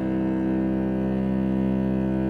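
Cello holding one long bowed note, steady in pitch and loudness.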